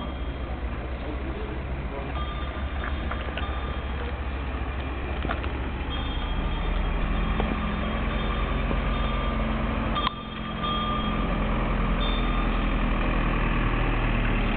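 Cowbells on walking cows ringing intermittently as thin steady tones, over a steady vehicle engine hum that gets louder about halfway through.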